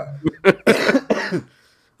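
A man coughing close into the microphone: a short sharp cough about half a second in, then a longer rough one that ends about a second and a half in.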